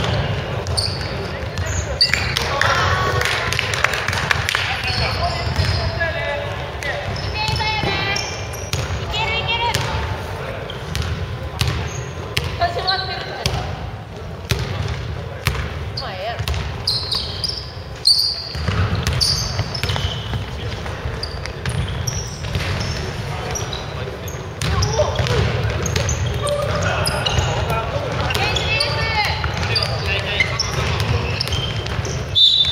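Basketball game on a hardwood gym court: the ball bouncing repeatedly as it is dribbled, with players' shouts coming and going.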